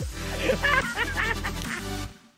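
Short music sting with a heavy bass, played as a segment-intro jingle. It dips briefly about halfway through and fades out just before the end.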